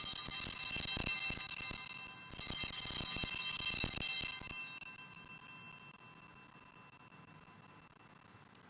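Altar bells (a cluster of small hand bells) shaken in two bursts of bright jingling, the second ringing away and fading out over a couple of seconds. They are the bells rung at the elevation of the host during the consecration at Mass.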